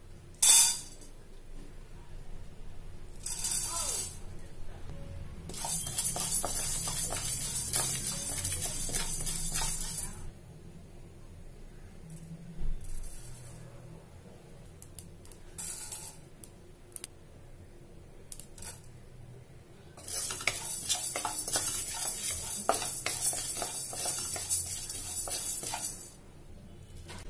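Dry lentils and cumin seeds dropped from a spoon into a dark metal pan, with a sharp tap of the spoon on the metal about half a second in, then spells of dry rattling and scraping as the grains are stirred and tossed with a wooden spatula while roasting.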